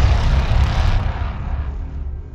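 Outro logo-animation sound effect: a loud rushing whoosh over a deep rumble, dying away steadily from about a second in as the logo settles.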